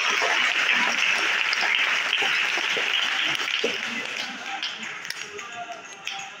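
Audience applauding, loud at first and slowly dying away over several seconds.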